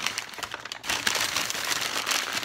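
Wrapping paper crumpling and crinkling as an item is unwrapped: a dense run of small crackles with a short break just before a second in.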